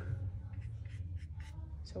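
Paintbrush bristles scrubbing through acrylic paint on a palette, a soft, uneven scratchy brushing.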